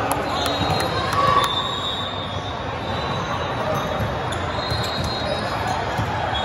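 Din of a large indoor volleyball tournament hall: steady hubbub of voices with scattered ball thumps from the courts and a few brief high squeaks.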